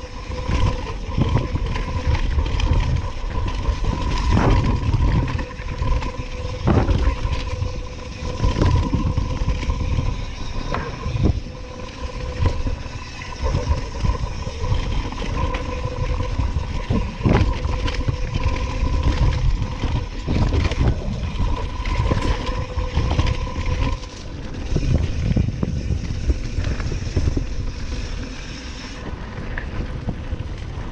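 Mountain bike descending a rough dirt trail at speed: tyres running over dirt and leaf litter, with wind rumbling on the microphone. The bike rattles and knocks sharply over bumps many times, and a faint steady whine sounds under it for most of the run before dropping away near the end.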